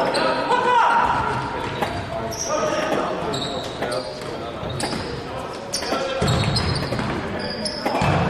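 Indoor football in a sports hall: the ball being kicked and bouncing off the hard floor, short high sneaker squeaks and players' shouts, all echoing in the large hall. A heavier thump comes about six seconds in.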